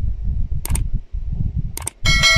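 Mouse-click sound effects of an animated subscribe button: a quick double click a little over half a second in and another near the end, over a low rumble.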